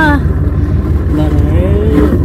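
Motorboat engine idling, a steady low rumble, with voices over it.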